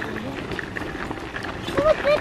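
Footsteps and the wheels of a loaded pull wagon crunching steadily over a gravel trail.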